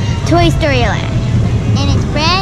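A young girl's voice, high-pitched, talking or exclaiming with one wide rise and fall in pitch, over a steady low background rumble.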